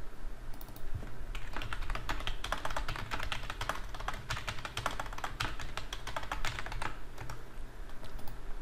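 Typing on a computer keyboard: a quick run of keystrokes that starts about a second and a half in and stops near the end.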